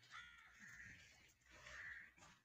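Faint, harsh bird calls, one just after the start and a stronger one near the end.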